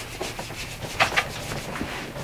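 A few brief scratchy rubbing noises, the strongest about a second in, after a click at the start.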